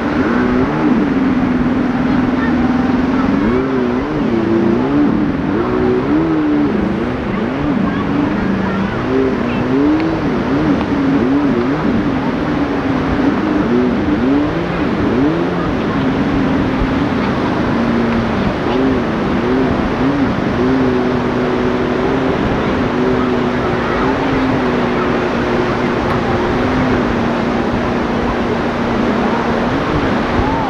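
Steady roar of sea surf and wind on the microphone, with a slow, wordless melodic line gliding and holding long low notes over it.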